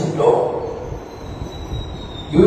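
A man's voice trails off, then a pause filled with a steady background whir and hiss with a faint thin high whine, from an electric wall fan running in the room.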